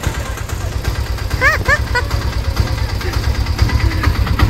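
Auto-rickshaw engine idling close by: a steady low, rapid chugging. A few short high-pitched calls come about a second and a half in.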